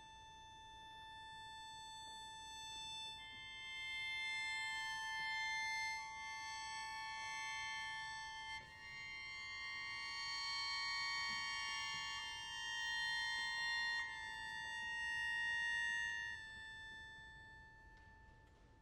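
Sheng (Chinese free-reed mouth organ) holding one steady high note, joined about three and six seconds in by further notes that build a sustained chord, which swells and then fades near the end.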